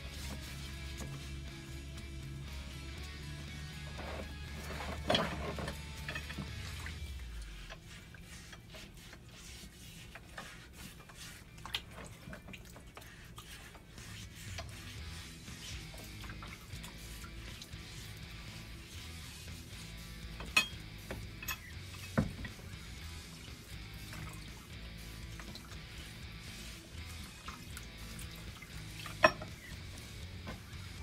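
Background music, with occasional sharp clinks and light splashes as rusty steel brackets are lifted and set down in a plastic tub of acid solution. The clinks come a few times, the loudest near the end.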